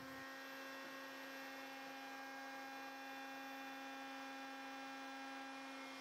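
Faint, steady electric hum of a table-mounted router spinning a pattern bit at speed.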